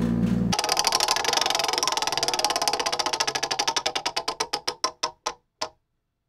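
Acoustic guitar playing stops abruptly about half a second in. It gives way to a rapid run of sharp clicks that slows steadily and fades out over about five seconds, like something spinning down.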